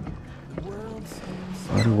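A short pause in a man's talk on a kayak at sea, holding only faint water and hull noise; his voice comes back near the end.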